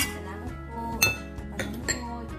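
A few sharp clinks of dishes and a spoon knocking together, the loudest about a second in, over background music with steady sustained notes.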